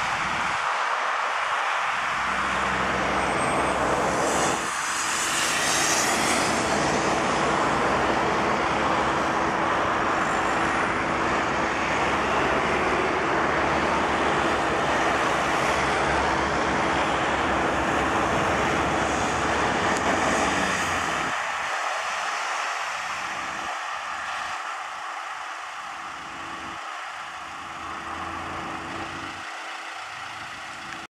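Cars and vans of a race convoy passing close by on a road, a steady rush of engine and tyre noise with low engine rumble. It eases off after about 21 seconds as the vehicles move away.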